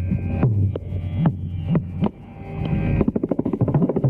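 Carnatic percussion solo on mridangam and kanjira: sharp hand strokes over a ringing low drum tone whose pitch bends up and down. The strokes come sparsely at first, ease off briefly around the middle, then pick up into a quicker run.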